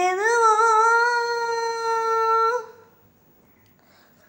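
A solo singer's voice holds one long high note, unaccompanied, with a slight lift in pitch just after the start before settling steady. It stops about two and a half seconds in, leaving near silence.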